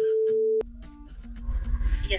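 A steady pure-tone bleep, laid over speech to blank out a spoken name, cuts off about half a second in. Fainter short tones follow, and a muffled voice over a phone's speaker starts about one and a half seconds in.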